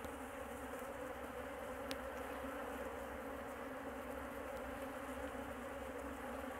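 A strong honeybee colony humming steadily around its opened hive, a low, even buzz.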